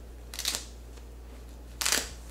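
A cloth diaper cover's fabric and hook-tape tabs being handled and pulled into place: two short rustling rasps about a second and a half apart, the second louder.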